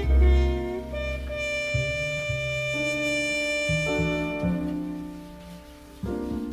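Slow jazz ballad played by a small acoustic jazz group: a horn holds long, steady notes over a soft piano and double bass accompaniment, the sound fading near the end.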